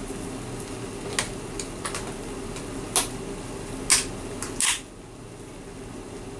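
Squash and meat in coconut milk simmering in a frying pan, with a handful of sharp crackles and pops over a steady hum. The hum drops away a little just before the end.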